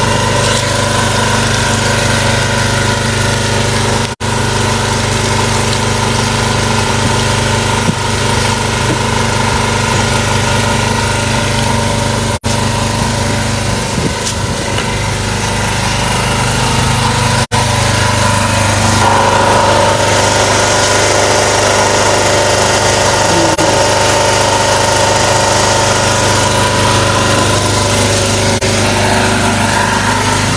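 A small engine running steadily with a constant hum, cutting out for an instant a few times and getting slightly louder about two-thirds of the way through.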